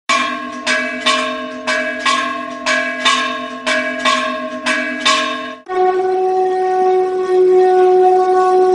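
A bell is struck about twice a second, each stroke ringing on, for about five and a half seconds. Then a conch shell is blown in one long, steady note that carries on to the end.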